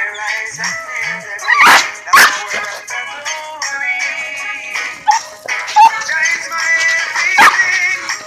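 Dogs barking in rough play, a few loud, sharp barks about a second and a half in, again just after, and near the end, over background music that plays throughout.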